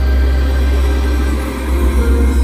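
Show soundtrack over loudspeakers: a loud, deep, steady rumble that begins to pulse near the end.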